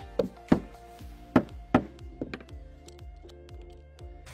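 A mallet knocking the edge of a hollow composite decking plank to drive it tight into place: four sharp knocks in the first two seconds, then a few lighter taps, over background music.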